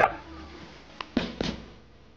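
Kitchen handling sounds as spring onions go into a glass saucepan of hot salted water to blanch: a sharp click about a second in, then two short clattering noises in quick succession.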